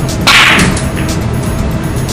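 A swish transition sound effect about a quarter second in, sudden and then falling away, over steady background music.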